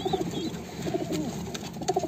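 Domestic pigeons cooing quietly.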